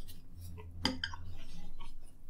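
A metal fork clinking and scraping against a plate as spaghetti is twirled, with one sharp clink a little before a second in and a few lighter ticks after it.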